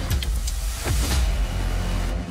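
Dramatic title-sequence sound effect: a deep rumble under a whoosh that swells to a peak about a second in, with a few sharp ticks near the start.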